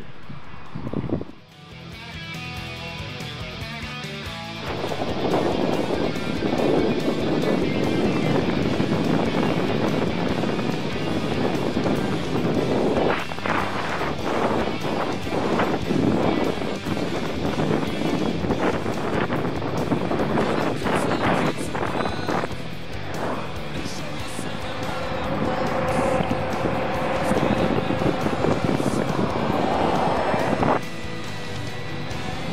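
Loud wind buffeting the microphone of a camera carried on a bicycle riding downhill at speed. It starts a few seconds in and keeps going.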